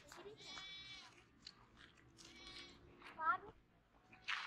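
Goat bleating three times, the last call wavering in pitch and the loudest, about three seconds in.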